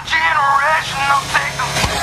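Rock music with a drawn-out vocal line that wavers in pitch, then heavy drum hits coming in near the end.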